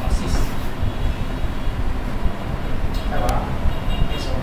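A constant, uneven low rumble, with a man's voice heard briefly about three seconds in.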